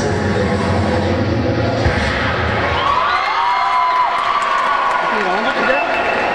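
Cheer routine music with a heavy bass beat, which drops out about three seconds in. Cheering and high shouts from the crowd and squad follow.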